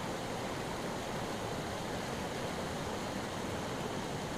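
Fast-flowing river rushing over rocks and rapids, a steady even rush of water.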